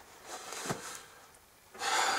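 Faint rubbing and handling of a snow-crusted sheet-metal snow feeder box as it is lowered, with one light knock about three-quarters of a second in. Near the end comes a sharp intake of breath.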